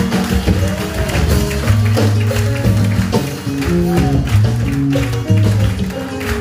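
Live band music with a bass line stepping between held notes, guitar and steady drum and percussion hits.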